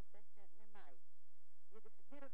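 A person's voice speaking, with a short pause just after the middle.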